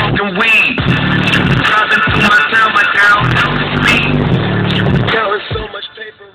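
Hip hop song with rapped vocals and heavy bass notes playing loud through a car audio amplifier at normal volume, below the point where the amp clips. The music drops away near the end.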